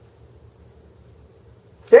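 Quiet room tone with a low, steady electrical-sounding hum, then a man's voice cuts in briefly at the very end.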